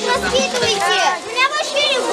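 A group of children talking and calling out at once, many high voices overlapping in excited chatter.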